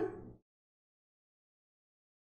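A man's short voiced laugh trails off in the first half second, falling in pitch. After that comes dead digital silence.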